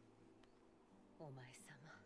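Near silence, then a faint, soft voice speaking briefly from about a second in.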